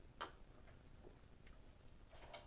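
Near silence: quiet room tone with a few faint clicks, the sharpest about a quarter second in.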